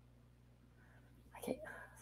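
Near silence with a faint steady low hum, then a woman's softly spoken 'OK' near the end.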